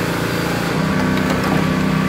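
An engine running steadily, its hum stepping up slightly in pitch a little under a second in.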